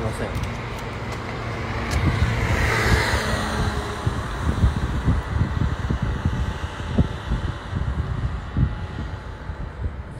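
Road traffic: a car passes, swelling up and falling away about two to three seconds in, over steady traffic noise and an uneven low rumble on a phone's microphone.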